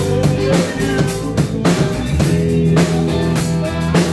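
Live band playing a pop-rock song: a drum kit keeps a steady beat under electric bass and guitar.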